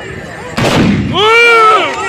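A volley of black-powder muskets fired together by a line of charging tbourida horsemen: one loud blast about half a second in that dies away over about half a second. Loud shouting voices rising and falling follow right after.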